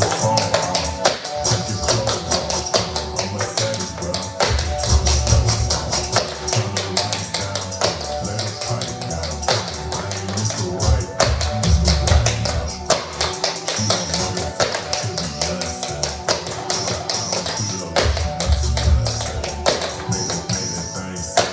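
Tap shoes striking a laminate wood floor in quick, irregular clicks of a tap-dance routine, over a bass-heavy hip-hop track with rapped vocals.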